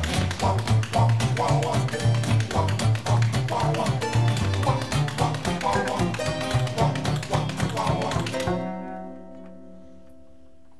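Upbeat instrumental band music with strummed guitars, upright bass and a fast tapping beat. The band stops short about eight and a half seconds in, leaving a quieter held chord ringing.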